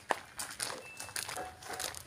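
Footsteps crunching on loose gravel, an irregular run of short crunches, with a sharp click just after the start.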